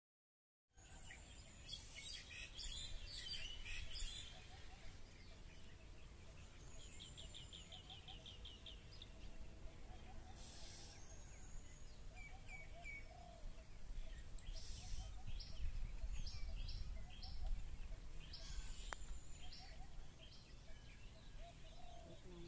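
Outdoor ambience of several birds chirping and calling, starting about a second in, with a rapid trill of evenly spaced notes around a third of the way through, over a faint low rumble.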